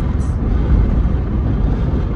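Steady low rumble of a car driving along a paved road, heard from inside the cabin.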